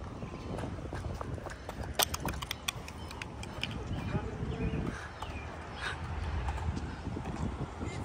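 Skateboard on concrete: a steady low rolling rumble, with a quick run of sharp clacks and knocks about two seconds in and a few scattered knocks later.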